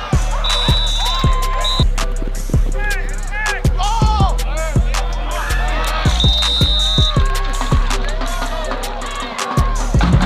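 Background music with a deep sustained bass and a steady beat; the bass drops out briefly near the end.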